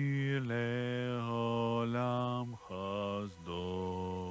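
A male voice chanting slowly in long held notes, in the manner of liturgical chant. The melody steps down to a lower note about two and a half seconds in, with two short breaks between phrases.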